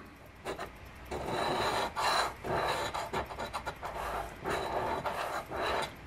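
A large coin scraping the scratch-off coating from a lottery scratch ticket: a dry rasping in repeated strokes, starting about a second in.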